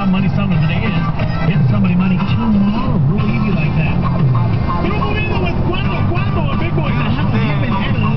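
Car radio playing music with a voice over it inside a moving car's cabin, with road noise underneath.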